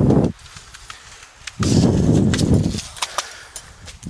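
Wind buffeting a microphone in gusts, a short one at the start and a longer one from about a second and a half in, with a few sharp clicks near the end.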